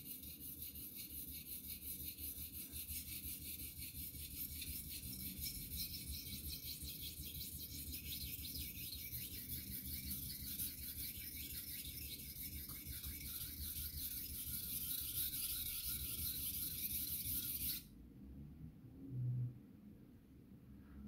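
Steel knife edge being stroked rapidly back and forth on a water-soaked Imanishi Bester 1000-grit whetstone: a steady, scratchy rasp of steel on wet stone that stops abruptly about 18 seconds in. The stone is cutting aggressively, very well from the first strokes.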